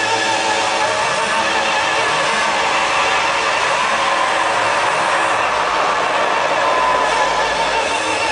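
Live band music over a large concert PA, heard from within the crowd as a dense, steady wash of sound.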